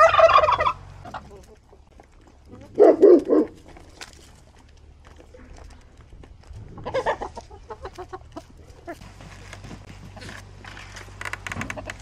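Tom turkey gobbling several times, the loudest gobble about three seconds in.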